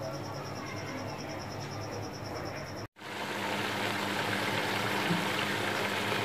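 For about three seconds there is only low background noise with a faint, fast, even high-pitched pulsing. Then, after a sudden break, beef keema with a little water left in it sizzles and simmers in an open pot, a steady hiss growing slightly louder.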